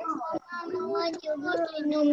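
A young child singing to themselves without clear words, in long held notes that bend gently in pitch.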